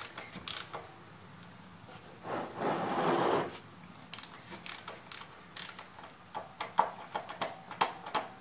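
Ratchet wrench clicking in short runs under the car as the cartridge oil filter housing is worked loose, with a brief rushing noise about two to three seconds in.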